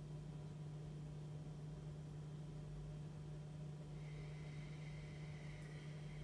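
Steady low hum over quiet room tone, with a faint high tone joining about four seconds in; no audible breathing stands out.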